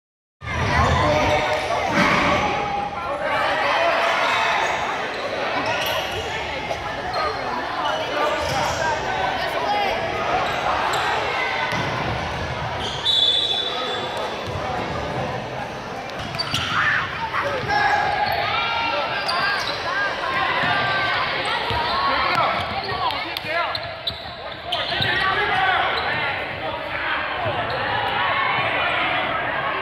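Basketball game in a gym: the ball bouncing on the hardwood floor and players and spectators calling out, all echoing in the large hall. A brief high whistle sounds about halfway through.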